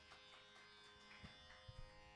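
Near silence: a faint steady buzzing drone, with a few soft low thumps in the second half.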